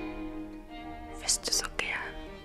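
Slow, sustained violin music, with a few short whispered, hissing sounds a little past a second in.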